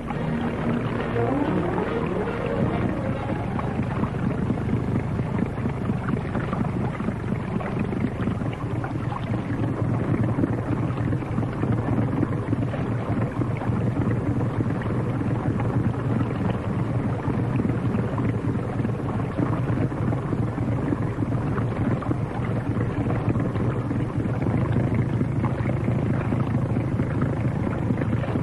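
Motorboat engine running with a steady low drone, mixed with the rush of water.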